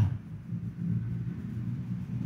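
Low, steady rumble of background room tone, with no distinct events.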